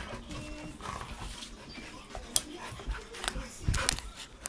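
Golden retrievers play-wrestling: scuffling, with scattered sharp knocks and clicks, one about two and a half seconds in and several close together near the end.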